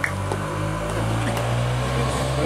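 A steady low mechanical hum, like an engine or generator running, holding the same few low tones throughout.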